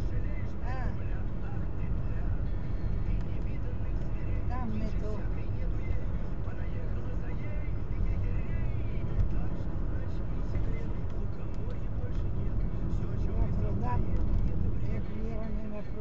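Steady road and engine rumble inside the cabin of a car cruising at about 40 to 50 mph, with faint voices talking now and then over it.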